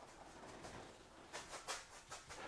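Faint scratchy strokes of a wide bristle brush rubbing oil paint onto a plywood panel, with a couple of slightly louder strokes in the second half.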